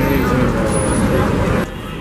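Busy city street noise: traffic and crowd voices, with a voice speaking over it in the first part. The sound drops suddenly to a quieter level about one and a half seconds in.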